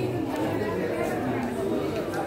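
Crowd chatter: several people's voices talking over one another at once, none of them clear.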